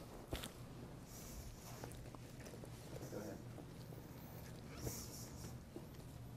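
Faint rustling and soft handling noises as a terry-cloth towel is tucked inside a damp tanned animal hide, with a couple of small knocks, one just after the start and one near five seconds in.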